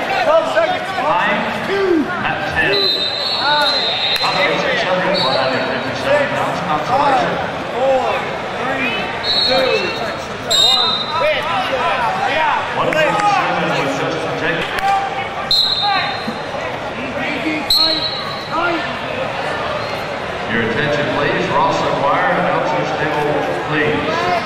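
Arena hubbub of many overlapping voices echoing in a large hall, with five short, high, steady tones, each about a second long, spread through it, and a few sharp knocks.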